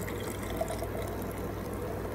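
Sparkling apple cider being poured from a bottle into a stemmed glass, a steady pour.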